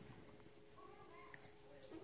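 Near silence: room tone with a faint steady hum and a few faint, brief sounds near the middle.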